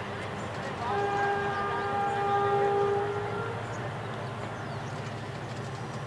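A long, steady horn-like tone starts about a second in and holds one pitch for about two and a half seconds before it stops, over a steady background hum.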